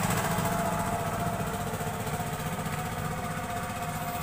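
A small engine running steadily, with a fast even pulsing and a thin steady tone over it.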